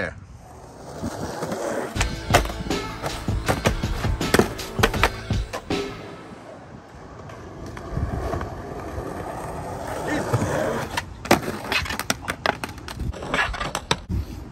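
Skateboard wheels rolling on concrete, with repeated sharp clacks and knocks from the board over the ground's joints and pushes. A quick cluster of clacks near the end as the board is popped for an ollie and clatters away in a fall.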